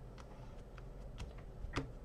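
A few faint, light ticks and taps as fingers press a layered card front down onto a cardstock card base, over a low steady hum.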